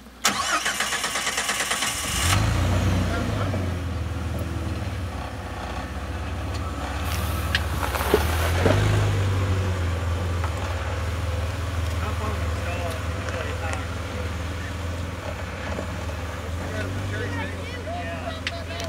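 Jeep Wrangler's starter cranking with a rapid even chatter for about two seconds until the engine catches, then the engine runs steadily at low revs, rising briefly about halfway through.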